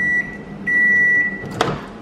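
Samsung microwave oven beeping to signal the end of its cycle. A long, steady, high beep ends just after the start, and a second long beep follows about half a second later. About a second and a half in comes a sharp click as the door is pulled open.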